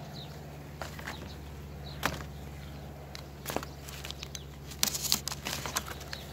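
Scattered light clicks and knocks of hands working at a bee smoker, with a busier run of crackling clicks near the end, over a steady low hum.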